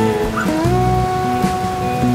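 Background music of held notes, several sounding together, that slide up to a new pitch about half a second in and then hold.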